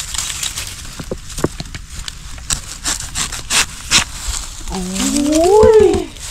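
Dry bamboo leaf litter and a freshly cut bamboo shoot being handled, giving scattered crackles and clicks. Near the end, a person gives one drawn-out vocal exclamation that rises and then falls in pitch; it is the loudest sound.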